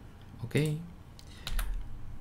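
A few quick computer keyboard keystrokes about a second and a half in, with a low thump among them.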